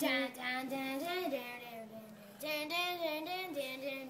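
A child singing a short melody unaccompanied, in two phrases with held notes.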